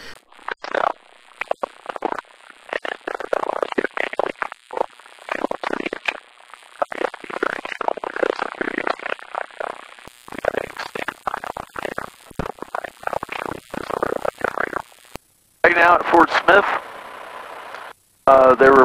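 Indistinct, broken-up voices over the aircraft's audio feed, with a short dropout about fifteen seconds in followed by a second or so of clearer speech.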